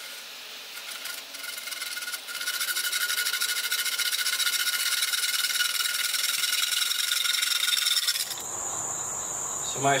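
A hand bow saw rasping through a wooden board, under a loud, steady insect buzz that swells about two seconds in. About eight seconds in, the sound cuts off sharply, leaving a thin, high, steady insect chirring.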